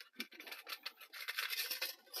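Thin metal plates of a take-apart wood stove scraping and clicking against each other and against an Altoids tin as they are handled and slid into it: a run of light scrapes and small clicks.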